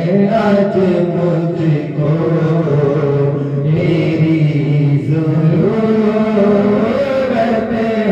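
A man singing a slow devotional song into a handheld microphone, in long held notes that slide and waver between pitches.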